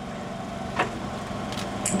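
A steady low mechanical hum, like a running engine or motor, in a pause between speech, with a faint short noise about a second in and another just before the end.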